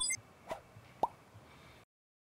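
Electronic logo-animation sound effect: the last of a run of bright blips, then two short plops about half a second apart, the second sharper and quickly rising in pitch.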